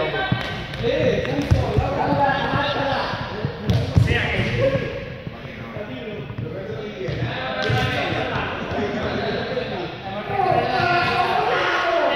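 Several voices talking and calling out, echoing in a large sports hall, with a few sharp thuds on the hall floor.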